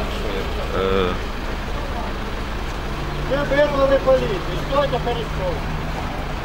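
Brief snatches of people talking over a steady low rumble of city traffic; a steady low hum comes in about three seconds in.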